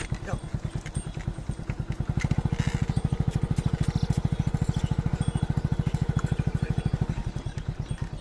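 A small engine running steadily with an even, rapid pulse of about a dozen beats a second.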